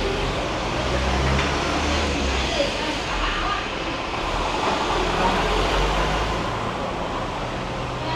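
Street noise: a steady roar of traffic, its low engine rumble swelling twice as vehicles pass.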